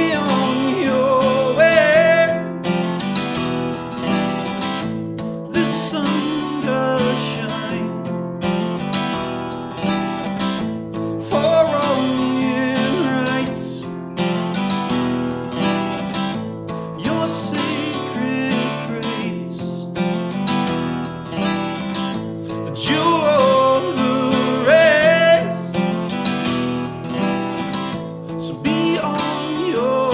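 Live folk song: an acoustic guitar strummed steadily under a man's singing voice, with a string trio of violin, cello and double bass holding sustained notes behind it.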